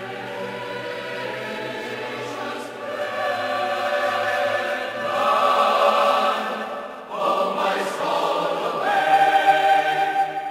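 A church choir singing a slow hymn in long, held notes, growing louder, with a new phrase entering about seven seconds in.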